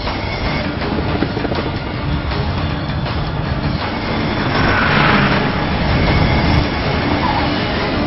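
Jet airliner's engines passing low overhead, swelling to their loudest about five seconds in, over a car's road noise and music.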